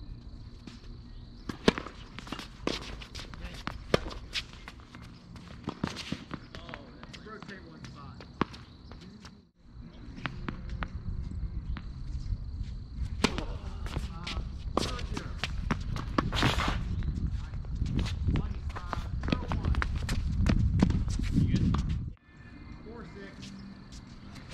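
Tennis ball pops off racket strings and bounces on a hard court in an irregular string of sharp hits through rallies. A thin steady high tone and a low rumble run underneath, and the sound breaks off abruptly twice.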